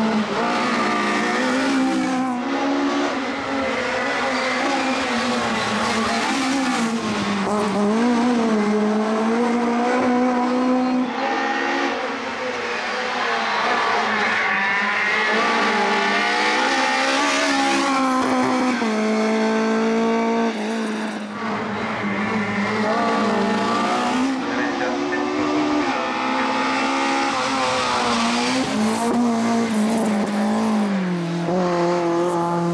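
Škoda Felicia Kit Car race engine revving hard, its pitch repeatedly rising and falling as it accelerates and lifts through hairpins, with a stepped run up through the gears a little past halfway. Tyres squeal on the turns.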